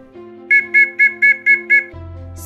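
A whistle blown in six short, evenly spaced blasts, about four a second: the scout whistle signal for 'assemble where the whistle is sounding'.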